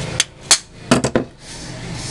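Five sharp clicks and knocks from an electric fan motor and a hand tool being handled, the loudest about half a second in and a quick cluster of three about a second in.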